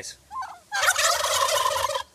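Several tom turkeys gobbling together in one loud burst. It starts just under a second in and lasts about a second.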